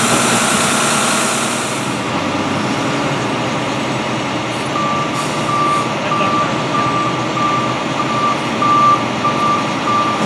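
Flatbed tow truck backing up, its engine running, with its reversing alarm starting about halfway through: a steady string of short, high, evenly spaced beeps.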